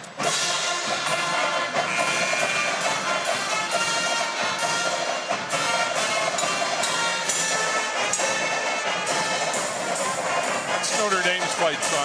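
A school pep band plays a loud, steady tune of brass horns with drums keeping a regular beat.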